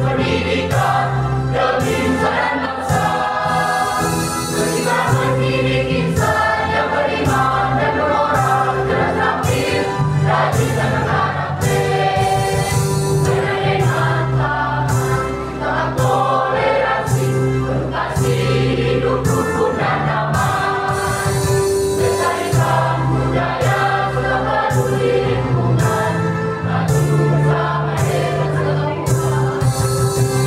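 A mixed choir of girls and boys singing together without pause.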